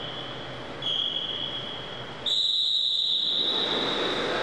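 Start signals for a swimming race: a steady high-pitched tone sounds for about a second, then, a little past two seconds in, a louder and slightly higher tone begins and holds to the end, over the echoing background of an indoor pool hall.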